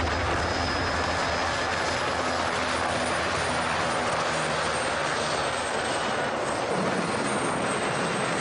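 Light turbine helicopter's rotor and engine running steadily as it sets down and sits on the ground, with a thin high whine over the noise.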